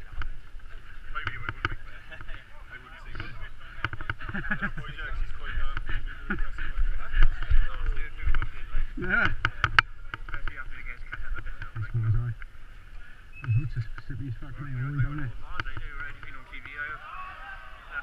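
Scattered talk from a group of people nearby, over a steady low rumble and small knocks from a body-worn camera as the wearer moves.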